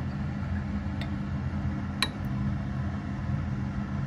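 Steady low mechanical hum with a few light clicks about a second apart, the sharpest about two seconds in.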